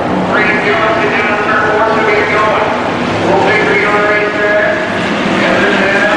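Several dirt-track hobby stock cars' engines running hard in a pack, their pitches overlapping and rising and falling as the cars race through a turn and onto the straight.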